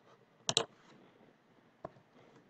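Computer keyboard keystrokes: a quick pair of key presses about half a second in, then a single one near the end.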